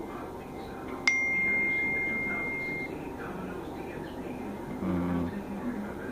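A single sharp ding: a struck, bell-like high tone that rings out clearly and fades over about two seconds. A brief low thump follows near the end.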